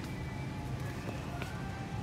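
Store ambience: a steady low hum with faint background music, and a single light click about one and a half seconds in.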